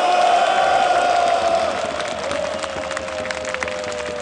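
Football supporters chanting in long held, sung notes: one drawn-out note, a short break about two seconds in, then another, with scattered claps.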